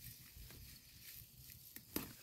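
Mostly near silence, with faint rustling and a soft click near the end as a Rampicante zucchini leaf is snapped off by hand.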